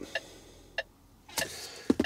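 Faint, evenly spaced ticking, about two ticks a second, inside a truck cab.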